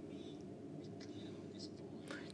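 A faint, indistinct voice over a low steady hum.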